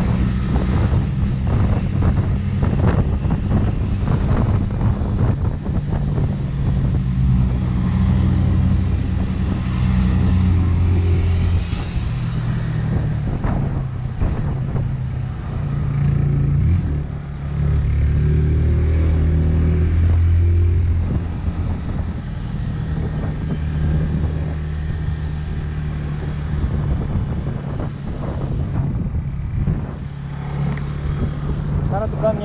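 Motorcycle engine running under way at road speed, heard from the rider's on-board camera with wind and road noise. The engine note shifts up and down several times as the bike slows and picks up speed in traffic.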